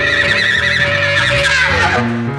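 Avant-garde jazz ensemble playing: a high held note with a fast, wide, whinny-like vibrato sounds over sustained lower notes, then slides downward near the end.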